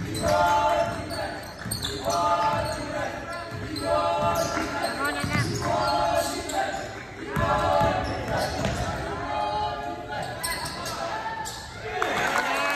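A basketball game in a gym: the ball bouncing on the hardwood floor, with repeated high squeaks about once a second and voices, all echoing in the large hall.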